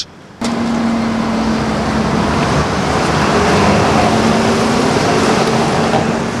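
A city bus running close by on a street: a steady low hum over even traffic noise.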